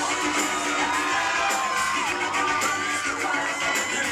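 Live pop band music from a concert, a melody line sliding up and down over the band, with an audience cheering and shouting along.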